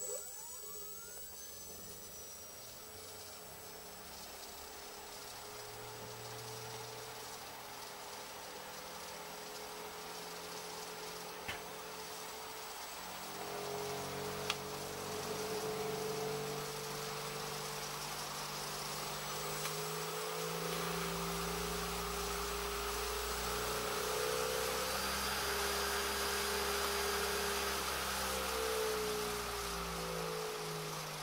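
3D-printed axial flux brushless motor with an epoxy-cast stator, powered at about 16 V, starting with a brief rising chirp and then running with a steady whine over a hiss. It grows steadily louder as it speeds up toward about 4000 rpm.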